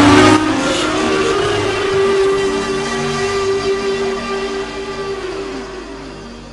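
Synthesizer keyboard holding sustained chords, a steady drone whose notes shift about two seconds in and fade out near the end.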